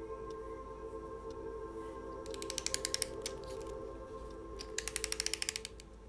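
Two bursts of rapid ratchet clicking, about a second each, from a small hand-wound clockwork mechanism, over a steady held musical drone.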